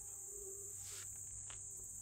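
A faint, steady, high-pitched chorus of singing insects that holds an even pitch throughout.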